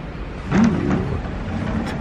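A steady low rumble of room noise, with a short murmured voice sound about half a second in and a sharp click near the end.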